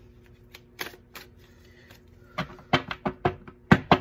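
A deck of cards being shuffled by hand: a run of sharp slaps and taps, a few at first, then coming quickly in the second half, the loudest near the end.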